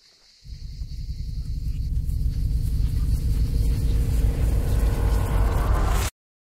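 A deep film sound-effect rumble that starts suddenly about half a second in and swells steadily louder, with a faint steady higher tone over it, then cuts off abruptly at the very end.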